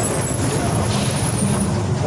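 Steady low vehicle rumble with a hiss over it, heard from inside an ambulance's patient compartment.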